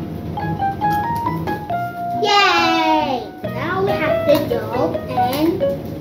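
Light background music with short plucked or keyboard-like notes, with a child's voice over it: a high falling vocal glide about two seconds in, then wordless babbling and vocal noises.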